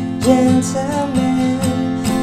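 Yamaha acoustic guitar strummed on an F chord in a down, down, up, up, down, up pattern, with a man singing the melody over it.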